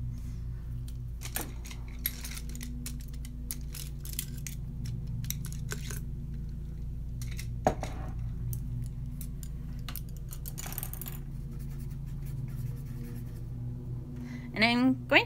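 Light scattered clicks and taps of small hard objects being handled on a desk, the loudest a sharp click about eight seconds in, over a steady low hum.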